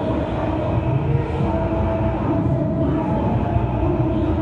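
Loud, heavily distorted hall sound through a church PA: a dense, steady rumble with a few held notes over it.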